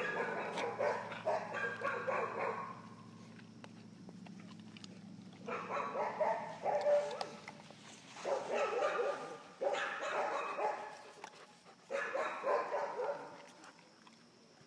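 Puppies barking at play, in four bouts of a second or two each, with short quiet gaps between.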